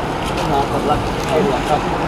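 Background voices talking over a steady low rumble of road traffic.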